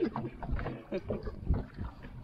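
Men's voices in brief fragments over wind and water noise on an open fishing boat, with two low thuds about half a second and a second and a half in.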